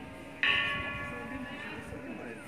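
A metal temple bell is struck sharply about half a second in and keeps ringing with several high tones that slowly fade, over the last of an earlier strike.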